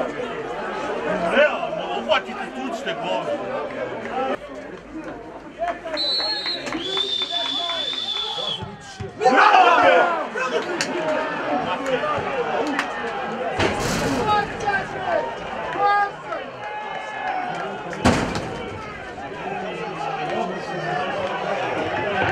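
Football players and a small crowd of spectators shouting and calling out on an open pitch, with a long high whistle blast about six seconds in and a burst of loud shouting just after it. Sharp thuds, like a ball being struck, come twice later on.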